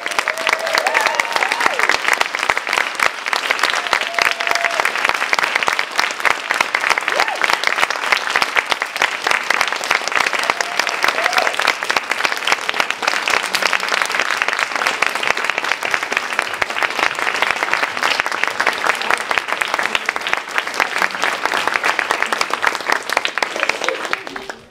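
Audience applauding at the close of a speech, a steady, dense clapping that holds at full strength and stops near the end.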